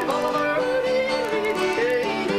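Two acoustic guitars playing a country tune together, with a melody line that slides between notes over the chords.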